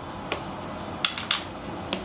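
Checkers pieces clicking against the board as a capture sequence is played out by hand: about five light clicks, three of them in quick succession in the middle.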